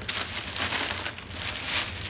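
Clear plastic bubble wrap crinkling and rustling as it is handled and wrapped around a package, a dense crackly noise that goes on for most of two seconds.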